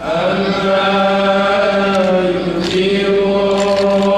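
A man's voice chanting an Arabic supplication (du'a) through a microphone, a new phrase opening at once in long held notes that glide up and down in pitch.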